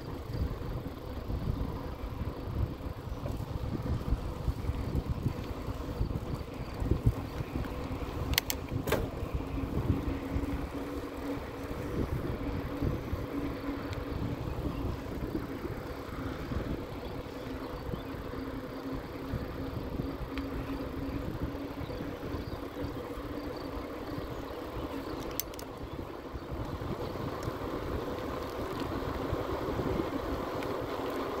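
Riding noise from an electric bike: wind rumbling on the microphone and tyres rolling on asphalt, with a steady motor hum underneath. Sharp clicks come about eight seconds in and again later on.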